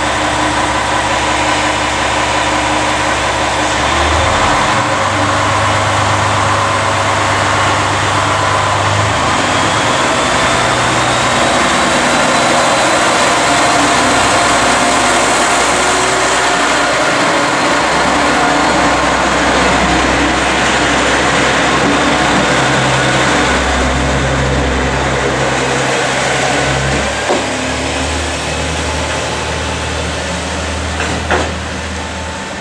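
KiHa 47 diesel railcar's engine running at the platform, then opening up about four seconds in as the railcar pulls away, its note stepping up and down several times as it gathers speed.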